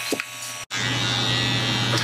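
Electric beard trimmer running with a steady buzz, cut off abruptly for an instant about two-thirds of a second in, then buzzing on.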